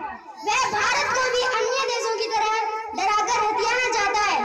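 A boy delivering a speech into a microphone in a loud, declaiming voice, with a short pause about half a second in.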